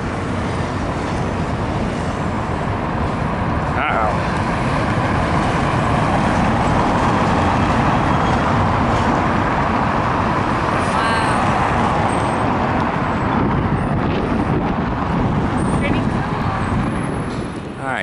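Steady road traffic: cars and a coach driving past, a continuous mix of engine and tyre noise that grows a little louder toward the middle.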